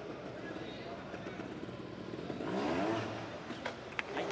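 Trials motorcycle engine blipped in a short rising rev about two and a half seconds in, over steady indoor-arena background noise, with a sharp knock near the end.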